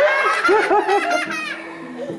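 A woman laughing into a handheld microphone: a few quick bursts of laughter that trail off and fade.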